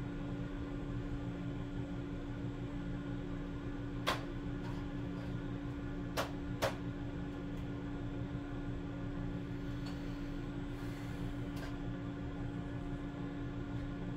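A steady low machine hum, with light clicks of 3D-printed plastic airframe parts being handled and fitted together: one about four seconds in and two close together about six seconds in.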